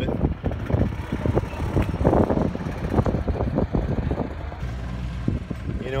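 Uneven low rumbling and knocking, then from about four and a half seconds a steady low hum of a Ford Mustang's engine running, heard inside the cabin.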